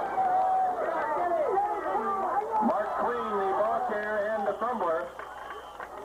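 Voices of several people talking and calling out at once, the words not clear, fading somewhat near the end.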